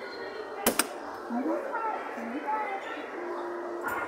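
A single sharp click under a second in, the loudest sound, followed by faint background voices and a brief steady tone near the end.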